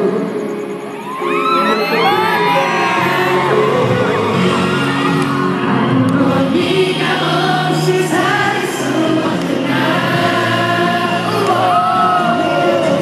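Live pop concert heard from far back in an open-air crowd: a singer over amplified music through the PA, with the crowd screaming and cheering, most strongly a second or two in.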